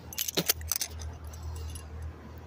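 A quick clatter of small hard clicks and jingles, like keys or coins being handled, in the first second. Underneath it is a steady low hum.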